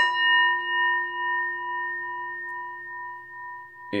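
Hand-held brass Tibetan-style singing bowl struck once with a leather-coated mallet, then ringing on with a rich tone of several pitches that slowly fades.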